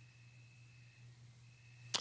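Near silence in a pause between spoken phrases: faint steady low hum of room tone, with the man's voice starting again right at the end.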